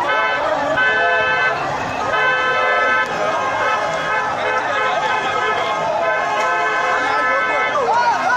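Horns blowing in repeated blasts of about a second each, over many people's voices shouting.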